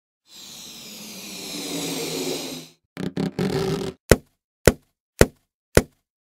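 Logo intro sound effects: a rising whoosh swelling for a couple of seconds and cutting off, then a few short noisy bursts, then four sharp hits about half a second apart.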